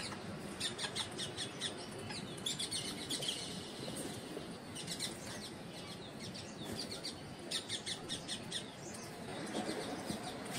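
Bird chirping in several runs of short, quick high chirps with pauses between them.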